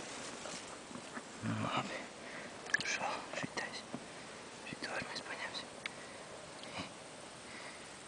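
Quiet whispering, with a short low murmur about one and a half seconds in, and a few small clicks and rustles.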